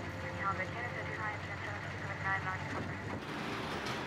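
Low, steady rumble of scene ambience, with faint distant voices heard twice. The rumble drops away about three seconds in.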